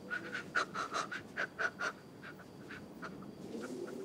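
A child panting hard in quick, irregular breaths, several a second, thinning out after about two seconds, with a low wavering drone coming in near the end.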